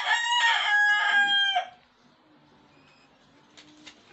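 A rooster crowing once, a loud, long, high call that drops in pitch and cuts off at about a second and a half in; after it only faint room tone.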